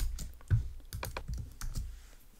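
Typing on a computer keyboard: a quick run of keystroke clicks that stops near the end.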